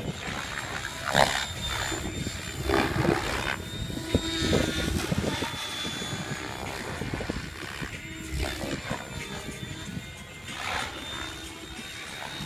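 Mikado Logo 600 SX electric RC helicopter flying 3D aerobatics: its rotor and motor whine rises and falls in pitch and loudness as it swoops and flips, with a steady high whine under it.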